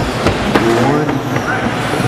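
Radio-controlled short-course trucks racing on an indoor dirt track, their running mixed with crowd and announcer voices in the hall. Two sharp knocks come within the first second.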